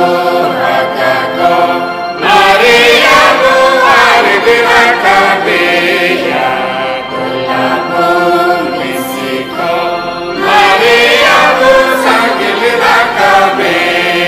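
A Mundari-language Good Friday song: singing over a held accompaniment, louder and fuller from about two seconds in and again from about ten seconds in.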